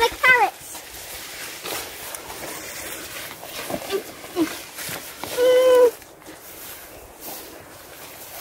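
A child's voice: a brief word at the start, then a single steady sung or hummed note about half a second long, a little after five seconds in. Faint rustling and small knocks of a child moving through the garden lie between.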